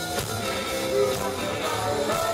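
Live rock band playing an instrumental passage on electric guitars, bass and drums.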